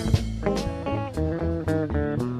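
Live band music: guitars playing over bass and drums, with regular drum and cymbal hits.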